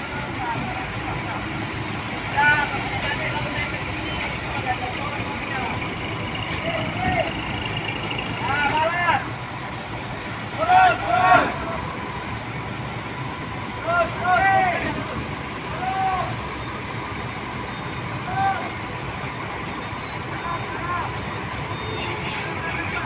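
Engines of heavy forklifts and a crane running steadily during a heavy lift. Over them come short, indistinct shouted calls from workers every few seconds, loudest about halfway through.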